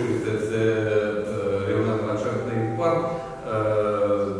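A man talking steadily in a low, level voice, with only brief pauses.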